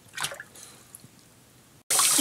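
Water splashing briefly in a sink as a small dog is lowered into it, followed by faint drips. Right at the end a tap starts running.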